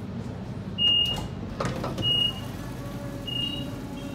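Sydney Trains Waratah A set door indicator beeping: three short, high single-tone beeps a little over a second apart as the sliding doors open at a station. A clatter of the doors opening partway through, over the train's steady low hum.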